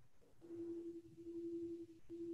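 A faint, steady, single-pitched electronic hum on the remote-meeting audio line. It comes in about half a second in and breaks off just before the end.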